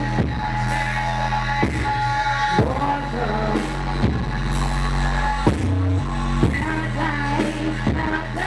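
A woman singing an R&B song live into a microphone over music with a deep, sustained bass line and a slow drum beat.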